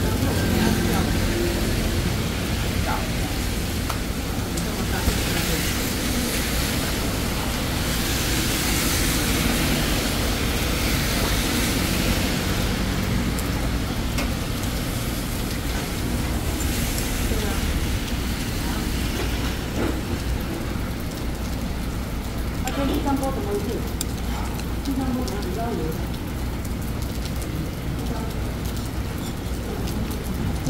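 Heavy rain falling steadily, with a low rumble of road traffic beneath it.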